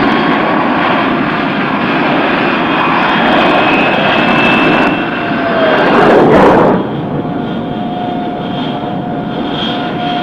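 Jet engine of a T-2 Buckeye trainer on a carrier landing: a steady loud rush with a thin high whine. It swells to its loudest about six seconds in as the jet touches down, then drops suddenly to a quieter, steady whine.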